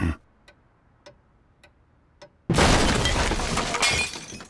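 A clock ticking slowly, a little under twice a second, in a near-silent room, then about two and a half seconds in a sudden loud crash of walls breaking apart with shattering debris, fading near the end.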